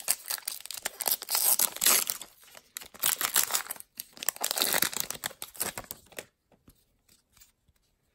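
Baseball card pack wrapper being torn open and crinkled by hand, a dense crackling tear that stops about six seconds in.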